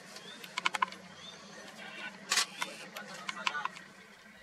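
Camera shutters firing in short bursts of clicks, about a second in and again twice in the second half, over a low steady hum. The sound fades out near the end.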